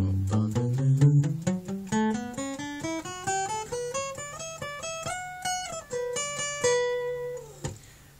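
Acoustic guitar playing a single-note solo line, the notes plucked one after another and climbing steadily in pitch. About six seconds in, the line steps back down and ends on a held note that fades out just before the end.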